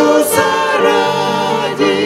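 A small group of mixed men's and women's voices singing a Ukrainian hymn in harmony, with piano and acoustic guitar accompaniment.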